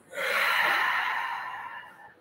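One long, breathy sigh or exhale lasting most of two seconds and fading away near the end.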